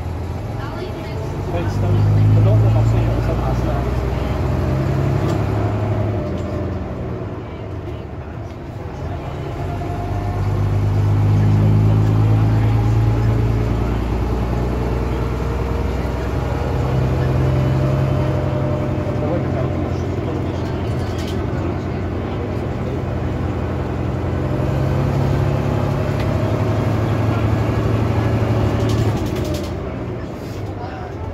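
Bristol RELL6G bus's rear-mounted Gardner six-cylinder diesel engine, heard from inside the saloon as the bus drives along. The engine note rises and falls several times, easing off about eight seconds in and pulling hard again soon after.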